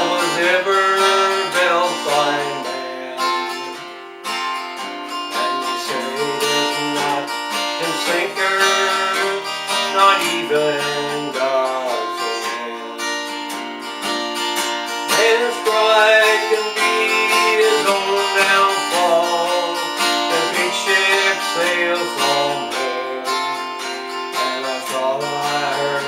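Acoustic guitar strummed steadily in a country-folk ballad, with a wavering melody line over the chords, between sung verses.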